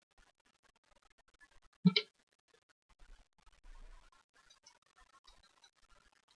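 Trading cards being slid and flipped through by hand, a faint scratchy rustling, with one short, sharper knock about two seconds in.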